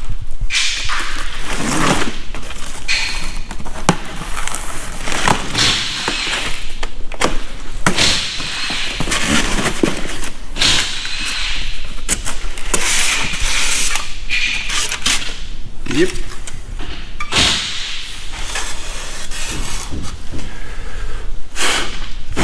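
A cardboard shipping box being cut open and unpacked: irregular rustling and scraping of cardboard and foam packing, with short knocks as flaps and contents are handled.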